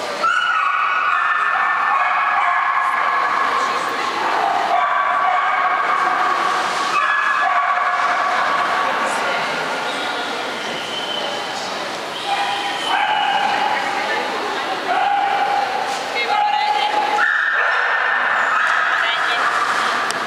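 A dog whining: long high cries held a second or two each, stepping up and down in pitch, with a few yips.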